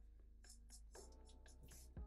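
Faint, quick strokes of a black marker on paper: about five short scratchy marks, as sketchy fur lines are drawn.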